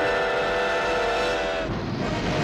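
Steam locomotive whistle sounding one steady chord-like blast that cuts off about a second and a half in, when the rumble of an explosion takes over.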